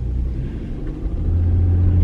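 Low rumble of a car's engine and road noise heard inside the cabin, with a low hum that grows louder a little past a second in.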